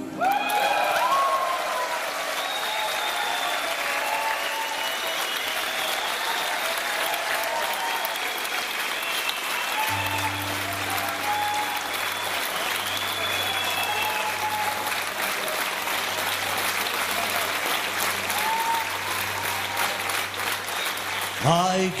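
Theatre concert audience applauding and cheering between songs, with shouts rising above the clapping. About ten seconds in, a low steady tone comes in beneath the applause, and near the end the band starts playing.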